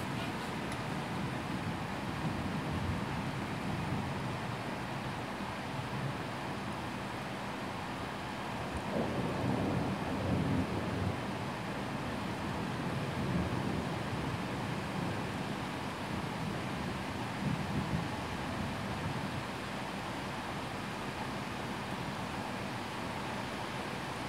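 Steady rain of a heavy thunderstorm, with low rumbles of thunder that swell about nine to eleven seconds in and again, more weakly, later on.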